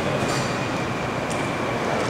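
Steady rumble and hiss of a large indoor airport terminal hall, with a faint high steady tone running through it.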